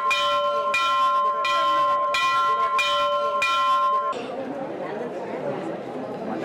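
Temple bell rung over and over, a strike about every 0.7 s with the tones ringing on between strikes; it cuts off suddenly about four seconds in, giving way to crowd chatter.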